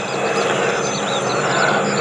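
Boeing Stearman biplane's nine-cylinder Pratt & Whitney R-985 radial engine running steadily in flight, getting a little louder as the plane approaches.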